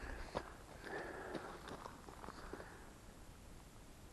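Faint footsteps of a hiker on a dirt trail: a few soft scuffs and ticks, fading in the second half.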